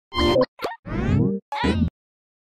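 Short comic cartoon sound effects from an animated logo sting: four quick plops and boings, the third longer with a sliding pitch.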